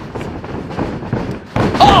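A heavy thud about one and a half seconds in as a wrestler is taken down and slams onto the wrestling ring mat.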